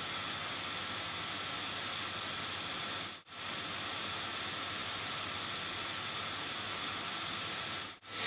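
Steady hiss of recording noise, with a few faint steady high tones in it and no other sound; it cuts out for an instant about three seconds in.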